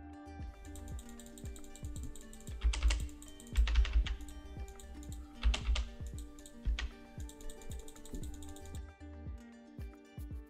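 Computer keyboard clicking in irregular runs over soft background music with sustained notes. The clicks are loudest in a cluster about three to four seconds in and again around five and a half seconds.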